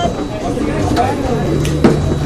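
Bowling alley din: background voices and hall noise, with one sharp knock near the end.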